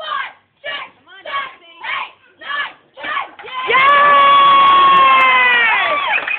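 Voices chanting in a steady rhythm, about two shouts a second, as encouragement. Then a single loud, high-pitched yell held for over two seconds, its pitch dropping at the end.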